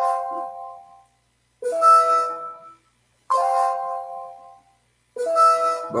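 Electronic alert chime from the online fantasy draft room, sounding four times about every 1.7 s. Each chime starts sharply and rings out over about a second, alternating between two different sets of notes. It sounds while a player's nomination clock is running down.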